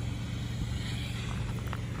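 A Harley-Davidson Ultra Limited's Milwaukee-Eight 114 V-twin idling steadily through stock mufflers: an even, low hum.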